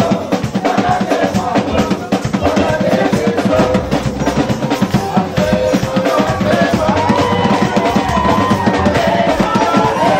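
Live band music led by a drum kit playing a busy, driving beat, with a melody line rising and falling over it.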